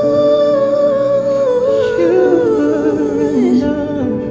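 Wordless sung vocalising in a slow worship song: one voice holds a high note for about two seconds, then winds down in a falling run near the end, over a soft sustained backing of held chords.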